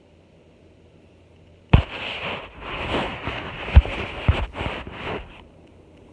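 Handling noise on the phone's microphone as it is moved: about three seconds of loud rustling and scraping with a few sharp knocks, the first near the start of the noise and two more near the middle.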